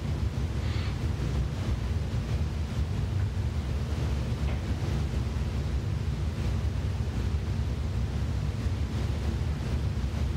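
Steady low rumble of wind noise on the microphone, with no voices.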